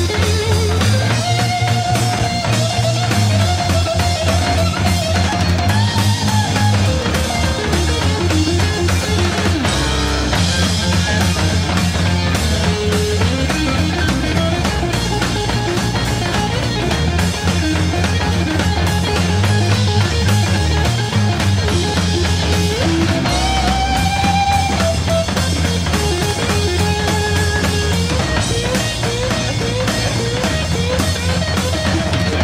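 Live early-1970s hard rock band recording: overdriven electric guitar through Marshall stacks playing lead lines with wide vibrato over bass and drums.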